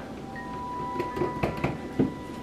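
Soft chime-like background music with sustained tones, and a few light crinkles of a plastic bag being handled in the second half.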